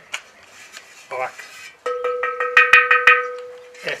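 Kiln-fired terracotta pot tapped about eight times in quick succession, starting about halfway in. Each tap is a short knock, and the pot keeps ringing with a clear, steady tone that dies away just before the end.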